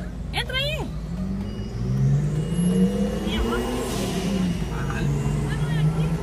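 Car engine running at low speed, its hum rising in pitch about two to three seconds in, heard from inside the car with a window open, under a short call at the start.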